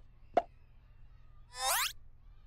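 Cartoon sound effects: a short pop about half a second in, then a quick, steeply rising whistle-like zip near the end.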